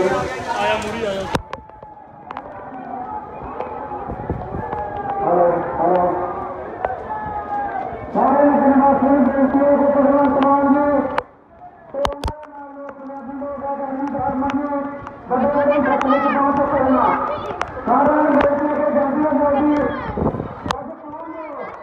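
A man's voice shouting long, drawn-out slogans, each held on a steady pitch for two to three seconds, several times in a row from about eight seconds in. A few sharp clicks sound about twelve seconds in.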